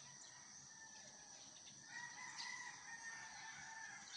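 A rooster crowing faintly in the distance: one long call starting about two seconds in, over a faint steady high-pitched tone.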